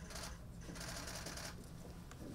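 Camera shutters firing in rapid bursts: two runs of fast clicking, each about a second long, over a low steady room hum.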